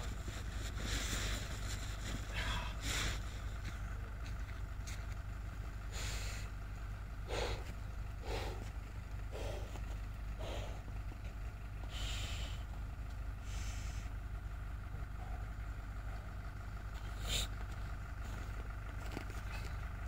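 Steady low outdoor rumble with faint, distant voices talking now and then.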